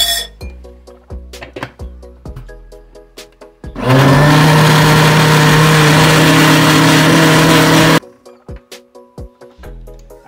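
Countertop blender motor running steadily at full speed for about four seconds, starting a few seconds in and cutting off suddenly. It is blending a thick mix of oats, cornmeal, plantain and sea moss with water.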